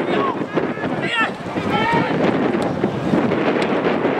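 Shouts from players and spectators at a football match, several short calls in the first two seconds, over a steady rush of wind on the microphone.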